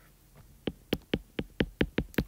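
Stylus tip tapping and ticking on an iPad's glass screen while handwriting: about seven sharp clicks, roughly four a second, starting about two-thirds of a second in.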